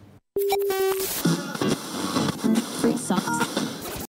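A short steady electronic tone, then a snippet of an Arabic song with a singing voice, played as a radio clip; the audio cuts off abruptly at the end.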